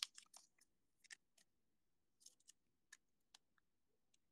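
Near silence with a few faint, short clicks and rustles from trading cards and a thin plastic pack-wrapper strip being handled.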